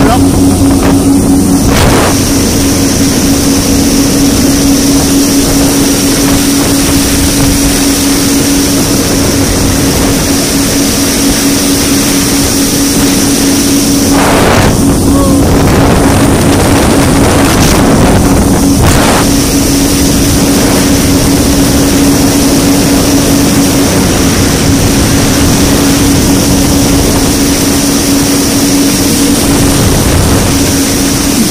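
Yamaha WaveRunner jet ski engine running steadily at speed, a constant drone, under the rush of spray and wind on the microphone. The noise of water and wind changes briefly a couple of times in the middle.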